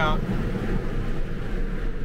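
Steady wind and road noise of a Tesla driving on a two-lane road, coming in through a rolled-down side window: a low rumble with a hiss and no engine note.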